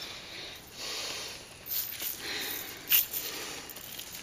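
Soapy water swishing and dripping in a plastic tub as a gloved hand lifts two brass clock chains out of it, with two short sharp clicks about a second apart past the middle, the second louder.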